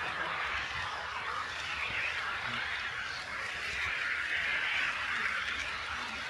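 HO-scale model of an EF81 electric locomotive running along KATO Unitrack: a steady rolling hiss of metal wheels on the rails.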